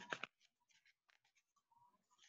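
Paper rustle of a picture book's page being handled and turned, a short crackling burst just at the start, then only faint scattered rustles.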